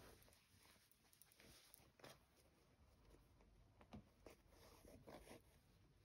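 Near silence with a few faint, short rustles of wool fabric and thread being handled during hand embroidery, about two, four and five seconds in.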